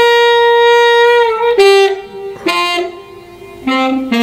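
Recorded tenor saxophone lick playing back from a practice app with the tenor part soloed and slowed down. It opens on one long held note of about a second and a half, then moves through a string of shorter notes at different pitches with brief gaps between them.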